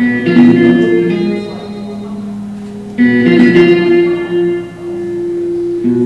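Acoustic guitar played live: a chord struck at the start and another about three seconds later, each left to ring out.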